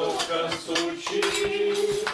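Dishes and cutlery clinking and clattering in a series of short, irregular knocks, with voices sounding underneath.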